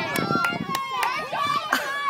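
Several high-pitched children's voices calling and chattering at once across an open playing field, with a few short sharp clicks among them.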